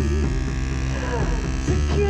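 Live electronic noise music: a loud buzzing low drone under warbling tones that slide downward about a second in.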